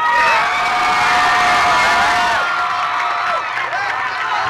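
Audience cheering and screaming, many high voices held at once over a steady roar, easing a little near the end.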